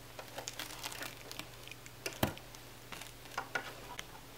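Faint scattered clicks and light taps of a plastic toy horse trailer being handled as it is readied for unloading, with one sharper click a little past halfway, over a low steady hum.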